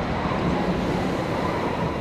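Hong Kong Light Rail train running, a steady rumble with a faint motor whine.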